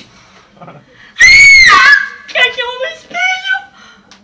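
A woman's loud, high-pitched scream about a second in, lasting under a second, followed by shorter, lower vocal cries.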